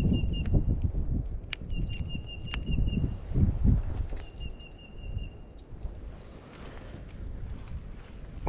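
A bird's high trill, repeated three times, each about a second long, over low rustling handling noise with a few sharp clicks.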